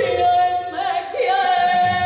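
A woman singing a Spanish copla through a stage microphone, sliding up at the start into a long, held high note with vibrato.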